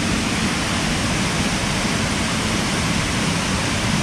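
Waterfall pouring from a rock cleft into a plunge pool: a steady, even rush of water.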